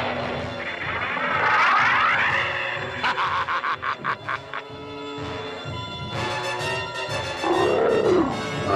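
Dramatic cartoon background music overlaid with sci-fi sound effects: a sharp falling zap at the start, a warbling electronic whine, then a rapid stuttering pulse. Near the end a cartoon dragon roars.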